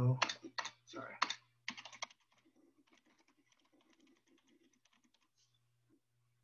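Typing on a computer keyboard: a run of faint, quick keystrokes entering a word, after a voice trails off in the first couple of seconds.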